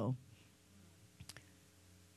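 A pause in speech: faint room tone with a steady low hum, and a few faint clicks a little over a second in.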